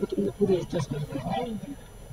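Faint voices of people talking in the background of a crowd, with no one voice standing out.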